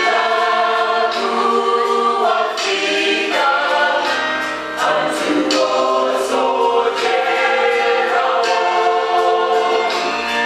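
A small mixed choir of women's and men's voices singing a gospel song in harmony.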